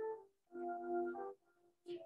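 A simple chant melody in a few held, steady notes with short gaps between them, heard faintly.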